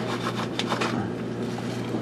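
Roasted peanuts being shaken out of their container into a hand: light, scattered rattles and rustles, mostly in the first second, over a steady low hum.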